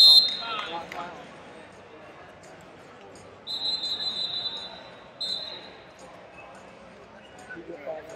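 Referee's whistle: a sharp blast as the period ends, then a longer steady blast about three and a half seconds in and a short one just after, over the low murmur of a large hall.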